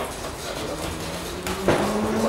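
Steady background din of a large indoor sports hall, with two sharp knocks in quick succession near the end, the second the louder.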